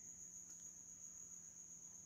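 Near silence: room tone with a faint steady high-pitched tone and a faint low hum.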